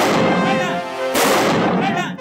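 Two loud rifle shots, one right at the start and one just over a second in, each with a ringing tail, over background music.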